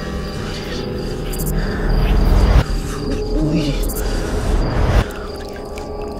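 Low rumbling handling noise from a handheld camera being pushed through brush. About three seconds in there is a short wavering vocal sound.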